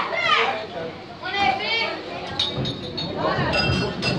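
Spectators' voices talking over one another in a large hall, with no clear words.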